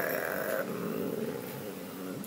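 A woman's low, creaky hesitation sound, a drawn-out throaty murmur while she thinks, trailing off quietly.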